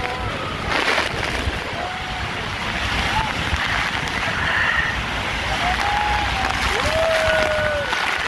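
Steady roar of the Iguazu Falls and churning whitewater around an inflatable boat, with spray and wind buffeting the microphone. People on board shout and whoop over it, with long held calls near the end.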